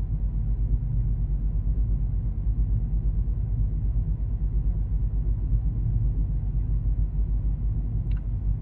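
Steady low rumble of a car cruising on a paved highway, heard from inside the cabin: engine and tyre noise at an even speed.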